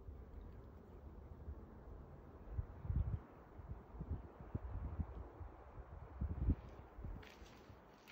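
Faint outdoor ambience with a few soft, low thumps scattered through the middle and a brief rustle near the end.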